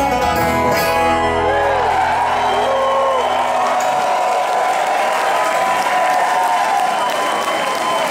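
A bluegrass band of acoustic guitar, mandolin, banjo and upright bass ringing out the final chord of a song, the low bass notes stopping about halfway through. A crowd applauds and cheers over the ending and on after it.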